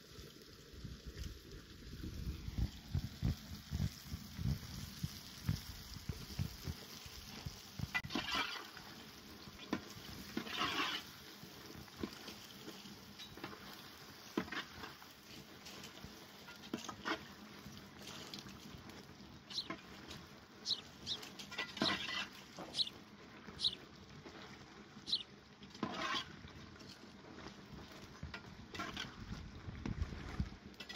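Pieces of bosraq dough frying in oil in a metal pot, stirred with a slotted metal spoon: scattered crackles, scrapes and clinks. A run of low thumps fills the first few seconds.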